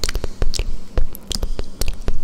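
Close-miked ASMR mouth sounds: irregular wet clicks and smacks of the lips and tongue, several a second.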